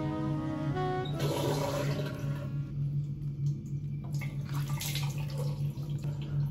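Music ends about a second in, then a bathroom tap runs into a washbasin with water splashing as hands wash at the sink, over a steady low hum.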